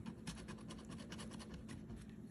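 A coin scratching the latex coating off a scratch-off lottery ticket in quick, faint strokes, about seven or eight a second.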